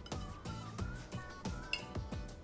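Background music with a steady beat and a light melody line.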